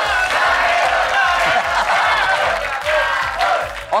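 Upbeat game-show background music with a steady beat, under a studio crowd cheering and clapping.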